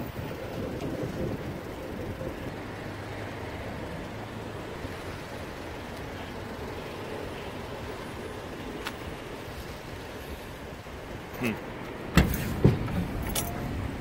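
Steady low outdoor rumble through most of the stretch, then near the end a few sharp clunks and knocks as the Chevrolet Corvair's front luggage-compartment lid is released and lifted open.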